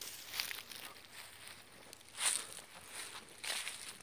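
Faint, soft scuffing rustles, a few scattered ones with the clearest a little over two seconds in: footsteps on the lakeside ground or grass. No goose call is heard.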